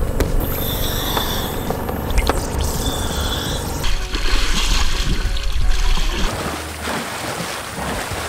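Water splashing and sloshing at the waterline beside a boat hull, with a steady low rumble underneath; the splashing is loudest from about four to six seconds in.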